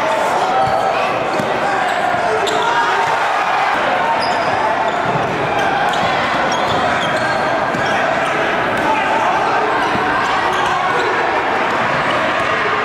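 A basketball being dribbled on a hardwood gym floor, with short sharp bounces over a steady babble of crowd voices.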